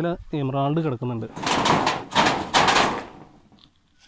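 A man's voice speaks briefly, then comes about a second and a half of rustling, scraping noise in three pulses before it goes quiet.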